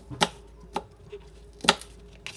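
Kitchen knife slicing an onion on a plastic cutting board: three cuts, each ending in a sharp knock of the blade on the board, the last the loudest.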